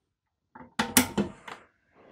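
A few sharp clicks and knocks as an Ethernet cable's RJ45 plug is handled and pushed into the network jack of a rack-mount climate monitor, starting about half a second in and lasting about a second.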